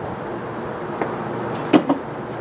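Steady outdoor background noise, with a light click about halfway through and a short, sharper knock near the end.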